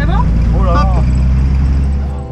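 The engine of a small high-wing jump plane running, heard inside the cabin as a loud, steady low drone. A voice sounds briefly over it twice in the first second.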